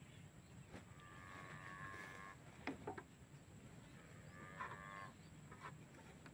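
Two faint, drawn-out animal calls: one starting about a second in and held for over a second, a shorter one near the end. A few light clicks come in between.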